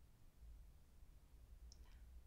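Near silence: room tone with a low steady hum and one faint, short click near the end.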